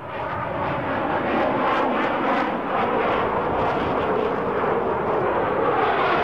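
Jet aircraft engine noise: a steady, loud rush that builds up over the first second or so and then holds.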